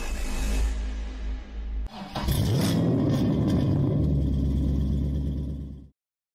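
Logo intro sound effects: a whoosh over a low rumble, then about two seconds in a loud engine-rev burst with music that settles into a heavy low rumble and cuts off abruptly just before the end.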